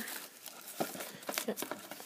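Hands handling a tablet's cardboard retail box and its packaging as it is opened: a few short, light knocks and rustles of cardboard.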